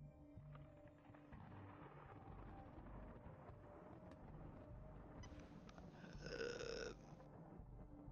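Faint ambient background music. About five seconds in, a louder pitched sound with many overtones holds for nearly two seconds, then stops.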